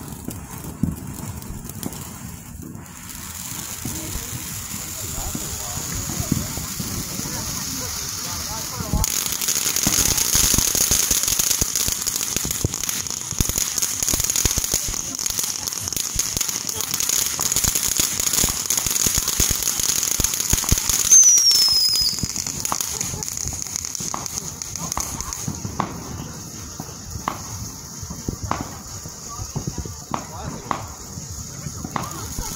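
Ground fountain fireworks spraying sparks: a steady hiss with dense crackling, loudest through the middle, and a short falling whistle about two-thirds of the way through. It thins to sparser pops near the end.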